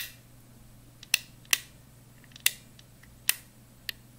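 Handling of a small LED panel and its wiring: about six sharp, irregularly spaced clicks over a faint, steady low hum.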